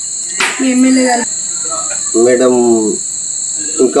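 Crickets calling in a steady, high-pitched chorus that never lets up, with a voice speaking briefly twice over it.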